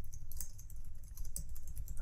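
Fast typing on a computer keyboard: a quick, continuous run of key clicks.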